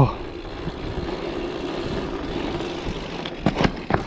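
Mountain bike rolling fast over cobblestones: a steady rumble of the tyres on the stones, then several sharp knocks near the end as the bike jolts over uneven ground.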